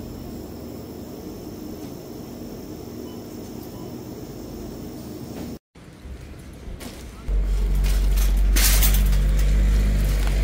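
Steady low hum of supermarket freezer cabinets; after a break, a loud low rumble from about seven seconds in, with a short rattle partway through, as a loaded metal shopping cart is rolled over paving stones.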